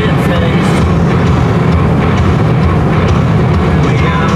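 Steady engine and road noise inside a moving car's cabin, with music playing loudly over it, likely from the car stereo.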